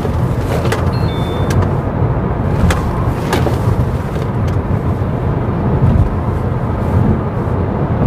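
Chevrolet Malibu 2.0 turbo under way: loud, steady road and engine noise with a few faint clicks.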